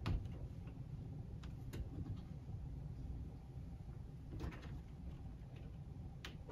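Hands working a joint in HO-scale flex track: a sharp click at the very start, then a few faint clicks and light handling sounds of small metal track parts, including a short cluster of clicks near the end, over a low room hum.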